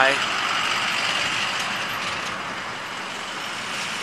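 Road traffic passing close by at a busy intersection: a steady rush of car tyres and engines that eases off slightly toward the end.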